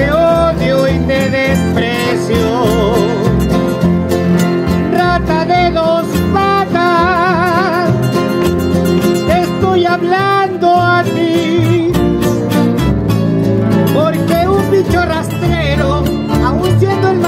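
Acoustic guitars and a double bass playing an instrumental passage: a steady strummed guitar rhythm and plucked bass notes under a lead melody played with a wide vibrato.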